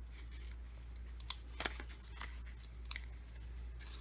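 A few light, sharp clicks and taps as small capped glass vials are handled and set down on a wooden tabletop, over a steady low hum.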